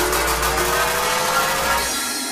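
Frenchcore electronic dance music in a build-up: a slowly rising synth tone over a steady deep bass and dense noise. The bass cuts out near the end.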